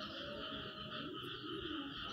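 Faint, steady background chorus of calling animals, a continuous high chirring.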